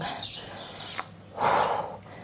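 A woman's sharp breath out, one short rush of air lasting about half a second, exhaling with effort as she lifts a leg from a high plank.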